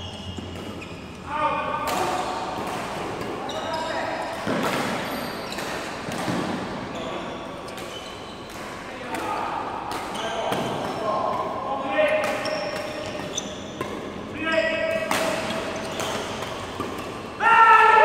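A badminton rally on an indoor court: sharp racket strikes on the shuttlecock and short squeaks of sports shoes on the hall floor, with voices echoing in the large hall. The voices grow louder near the end.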